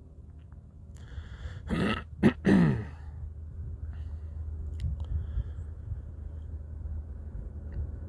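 A man clearing his throat twice in quick succession about two seconds in, over a steady low background rumble of outdoor noise.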